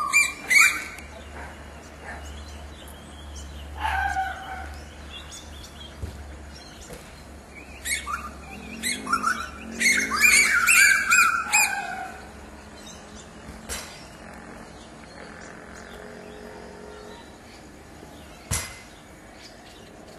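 Wild birds calling in the trees: a single falling call about four seconds in, then a burst of squawky chirps from about eight to twelve seconds in.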